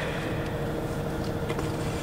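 Steady hum and hiss of an indoor ice rink, with a faint click about one and a half seconds in.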